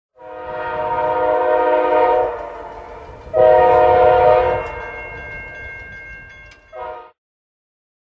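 Train horn sounding a chord of several tones over a low rumble: a long blast, a second shorter blast about three seconds in, and a brief toot near the end.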